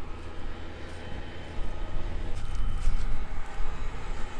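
Large four-wheel-drive John Deere tractor's diesel engine idling, heard outdoors as a steady deep rumble that grows louder from about halfway through.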